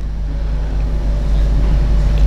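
A steady low hum, rising slightly in level toward the end.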